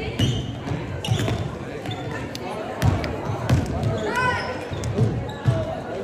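Basketball dribbled on a hardwood gym floor, a run of low bounces about two a second, with sneakers squeaking on the court about four seconds in and voices of spectators and players in the reverberant gym.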